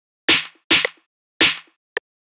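A programmed phonk drum pattern playing back from FL Studio: sharp snare hits, three of them with two close together near the start, alternating with a short, clicky percussion hit. There is no voice over it.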